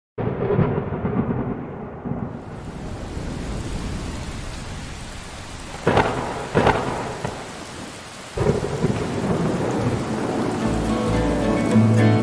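Heavy rain falling through a thunderstorm, with low rolling rumbles of thunder. Two sharp thunder cracks come close together about halfway through, then another rumble follows. Music begins to come in near the end.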